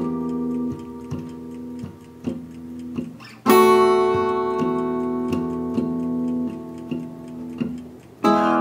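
Guitar playing a simple blues progression in seventh-chord shapes. A chord rings and fades under lighter strokes, and a loud fresh strum about three and a half seconds in rings on with more light strokes after it.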